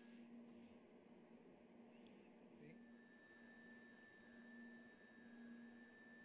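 Near silence: a faint steady low hum with light hiss, joined a little under halfway through by a faint high steady tone.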